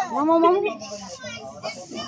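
Children's voices: one child calls out loudly at the start, then quieter chatter follows.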